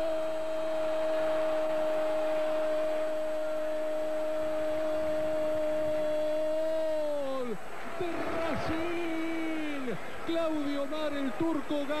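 An Argentine football commentator's drawn-out goal call: one '¡Gol!' held on a single steady pitch for about seven and a half seconds before it drops away. It is followed by more excited shouting that swoops up and down in pitch.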